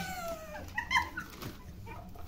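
A woman laughing: a high squeal that falls in pitch over about half a second, then a few short laughing bursts about a second in.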